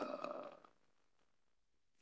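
A man's voice trailing off in a pause, fading out over the first half-second, then dead silence.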